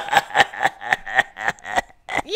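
A person laughing in a quick string of short, high-pitched bursts that slow down and fade away.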